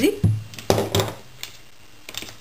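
A few sharp light clinks and knocks about a second in, from a beaded wire snowflake being picked up and handled against the tabletop.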